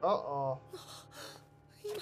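A young man's startled gasp with voice in it, sliding up in pitch for about half a second, followed by two short breathy pants.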